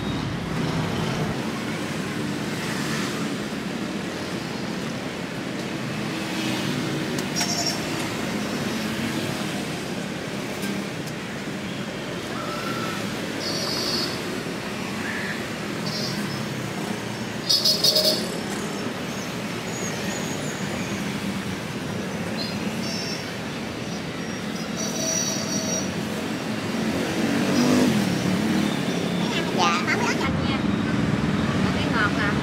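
Steady street traffic noise, with a few short, sharp high-pitched sounds now and then, the loudest about 18 seconds in.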